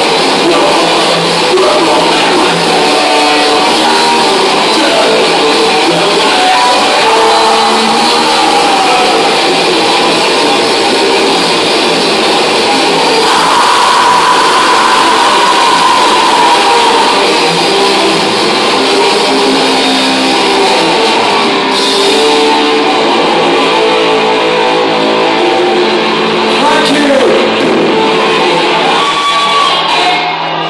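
Thrash metal band playing live: distorted electric guitars and drums with shouted vocals, loud throughout, with a long held note about halfway through.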